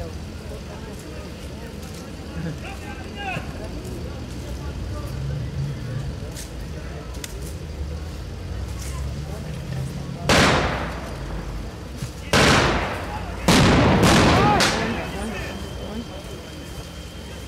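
Three loud blasts of staged battle fire: the first about ten seconds in, the next two seconds later, the third a second after that. Each has a long, rolling fade, and the last is the loudest and longest. A low, steady rumble runs underneath.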